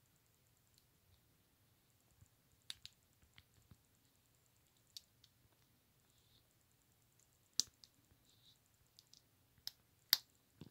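Small LEGO plastic pieces clicking as they are handled and pressed together: a few faint, sharp clicks scattered through near silence, the loudest about three-quarters of the way through.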